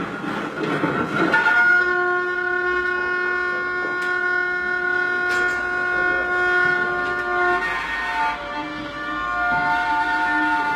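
Amplified electric string instrument played with a bow: a scratchy, noisy attack, then from about a second and a half in a steady sustained drone with a clear pitch. Near the end the drone shifts to a different pitch.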